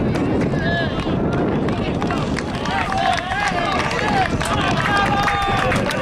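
Voices of footballers and spectators calling out, clearest in the second half, over a steady rumbling background noise.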